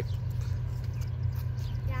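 Low, steady rumble of an approaching Canadian National freight train's diesel locomotives.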